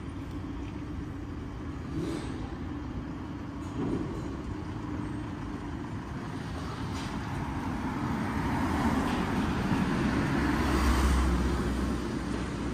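Street traffic, with a vehicle passing close by: its sound builds through the second half and is loudest, with a low rumble, shortly before the end. A couple of faint knocks come early.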